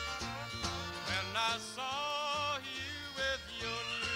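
A country band playing live: bass notes keep a steady beat under a wavering melody line, with a long sliding note falling in pitch near the end.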